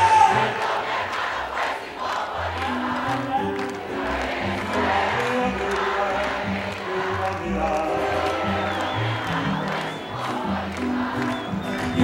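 Live band music playing at a steady level over a large outdoor crowd, whose voices sing and shout along underneath.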